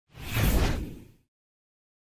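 An edited whoosh sound effect with a deep low boom under it, swelling up and fading out within about a second.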